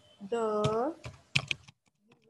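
Typing on a computer keyboard: a few separate keystrokes, most of them in the second half.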